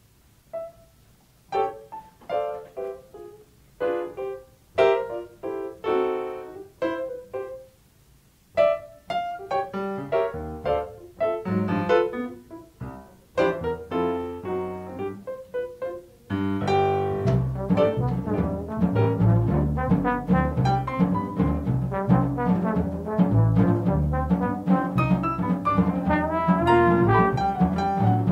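Jazz piano playing an unaccompanied introduction of spaced chords and runs. About sixteen seconds in, upright bass and drums come in and the full quartet plays, with the trombone playing by the end.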